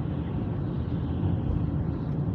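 Steady road and engine noise heard inside a moving car's cabin, a low rumble with the hiss of tyres on a wet road.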